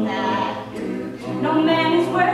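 A cappella group of male and female voices singing in harmony, with no instruments. The sound thins and drops a little after half a second in, then the full ensemble swells back about a second and a half in.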